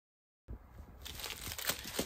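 Clear plastic wrapping on a handbag's handles crinkling as the bag is handled, an irregular crackle starting about half a second in.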